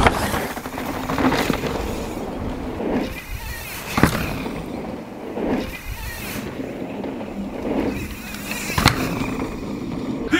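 Santa Cruz enduro mountain bike riding down a dirt trail: steady tyre and trail noise with sharp knocks from the bike hitting bumps and landing, one about four seconds in and another near the end.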